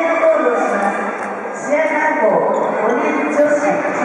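Voices calling out and talking in a large, echoing gymnasium hall, with a couple of faint sharp clicks.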